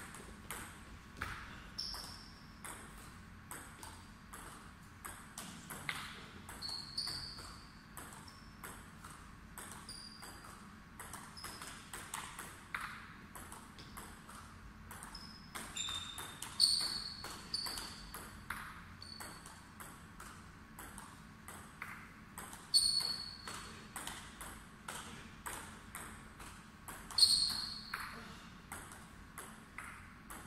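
Table tennis rallies: the ball clicking irregularly off the table and the players' bats, many hits leaving a short ringing ping. Several hits in the second half are louder.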